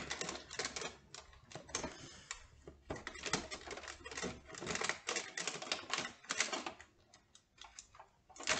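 Advent-calendar packaging being handled and opened by hand: rapid, irregular clicks and crackles of cardboard and plastic, thinning out about seven seconds in.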